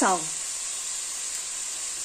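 Onion, leek, grated carrot and shredded chicken frying in olive oil in a steel pot: a steady, even sizzle.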